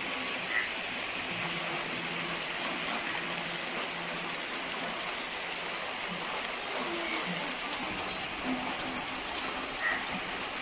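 Heavy rain falling steadily, a constant even hiss of downpour on foliage and roofs.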